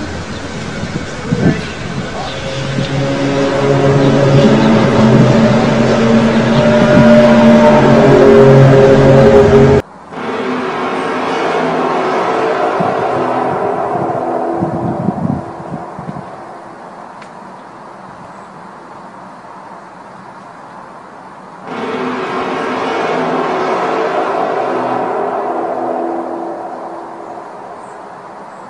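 Loud, low, trumpet-like drones: several held tones sounding together that hold and then shift pitch, the unexplained 'trumpet in the sky' sound. About ten seconds in the sound cuts off abruptly and a second recording of similar drones begins, swelling, falling away to a quieter hum and swelling again near the end.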